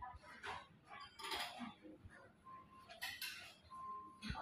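Faint dining-room ambience of a breakfast buffet: scattered clinks of tableware and glass, a couple of them ringing briefly, over a low background murmur.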